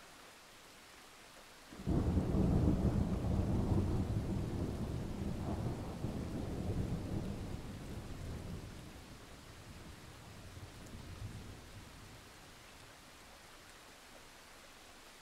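A thunderclap over steady rain: it breaks suddenly about two seconds in and rolls on, slowly dying away over several seconds, with a smaller rumble near the end. A faint rain hiss runs underneath throughout.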